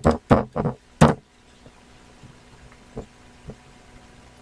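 Computer keyboard keystrokes: about five quick, loud key clicks as the last letters of a search and Enter are typed, followed by two faint clicks near the end.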